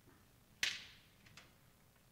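Chalk tapping on a blackboard: one sharp tap about half a second in, then a fainter tick less than a second later.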